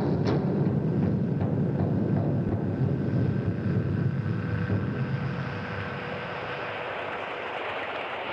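Deep rumbling noise from a recorded music or sound piece, with a sharp drum-like strike just at the start; the rumble thins out about five or six seconds in, leaving a steadier hiss with a faint held tone.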